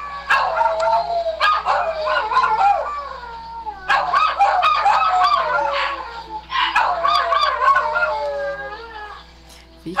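Several dogs howling together in long, wavering howls that rise and fall, in bouts with short breaks about a third and two-thirds of the way through, fading near the end. The dogs are badly agitated by a solar eclipse.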